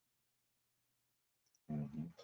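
Near silence with a single faint computer-mouse click about one and a half seconds in, followed at the end by a short bit of a man's voice.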